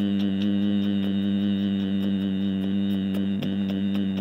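A man humming one long, steady note through closed lips, with his hand held over his mouth; the note wavers briefly about three and a half seconds in.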